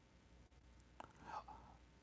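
Near silence: room tone, with a faint click and a soft breath from the man about a second in.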